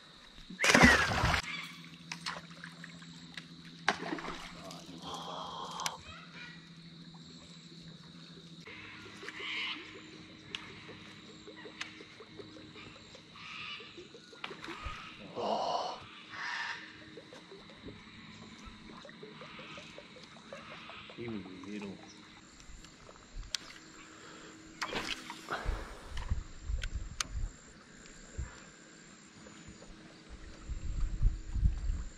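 A Murray cod dropped back over the side of a boat into the river, a short loud splash about a second in, followed by quieter movement and low voices.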